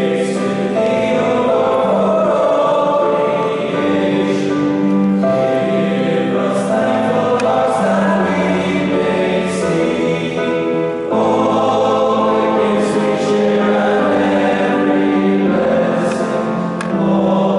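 Teenage school choir singing in parts, moving through long held notes in a reverberant stone church.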